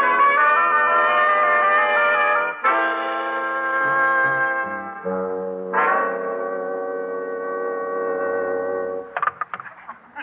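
Orchestral brass music bridge: trumpets and trombones playing sustained held chords that shift about every three seconds, marking a scene change in an old-time radio drama. The music stops about a second before the end.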